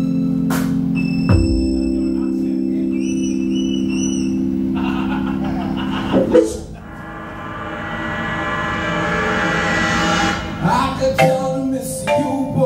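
Live band music: sustained electronic organ chords held from the keyboard, then a swell building for a few seconds, with drum and percussion hits coming in near the end.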